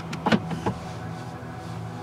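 Steady low hum of a car engine idling, heard from inside the cabin, with two short clicks in the first second.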